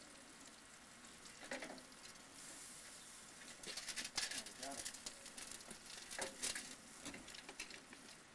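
Faint sizzling of a whole turkey on a barrel grill, with a run of clicks and scrapes from a metal fork and tongs against the grate starting about halfway through as the bird is lifted off.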